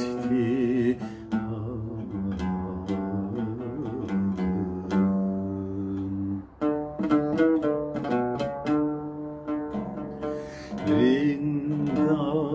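A man singing a Turkish classical song in makam Acemaşiran to his own oud accompaniment. The oud's plucked notes run throughout, and his wavering voice is heard near the start and again near the end.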